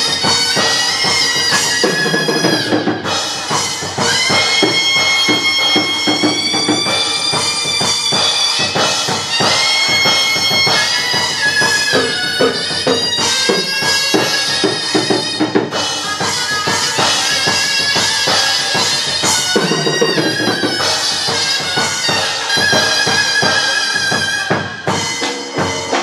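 Chầu văn ritual music: a shrill, reedy wind instrument plays a sliding, held melody over steady drum and clapper beats.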